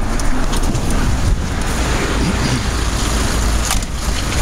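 Minibus engine running close by, mixed with street traffic noise.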